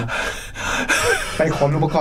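A man's sharp, breathy gasp lasting about a second, between spoken phrases.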